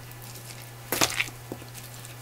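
Seasoned radish cubes squishing and tapping as a plastic-gloved hand lifts a handful from a stainless steel bowl and sets it down on a ceramic plate, with one sharp click about a second in and a few softer taps after.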